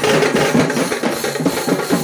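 Procession band of drummers beating strapped-on side drums and bass drums together in a fast, dense beat.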